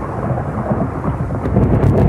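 Thunderstorm: thunder rumbling over rain, starting suddenly, with a few sharp crackles near the end.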